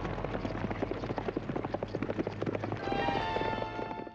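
Many hooves pounding dirt as a herd of horses and cattle is driven at a run. About three seconds in, film-score music comes in over them with sustained high notes.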